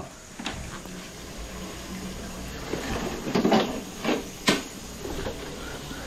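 Handling of a drain inspection camera and its cable: scattered soft knocks and rustles over a low steady hum, with one sharp click about four and a half seconds in.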